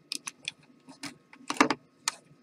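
Light clicks and taps as a corded hot glue gun and a craft stick are handled over a wooden bench, with a louder knock about one and a half seconds in as the glue gun is set down on the bench.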